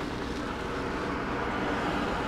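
Steady hum of a kei cargo van's engine idling, heard from inside the cabin.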